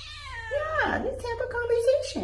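Domestic cat meowing: a short falling meow, then a long drawn-out meow held at a steady pitch that rises slightly at the end.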